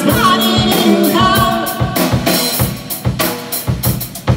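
Live rock band playing: two electric guitars, electric bass and a drum kit, with the drums keeping a steady beat. The sound drops back to quieter drum hits near the end.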